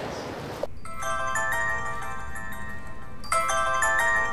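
Mobile phone ringtone: a short chiming melody that starts suddenly about a second in and begins again near the end, ringing from inside a handbag.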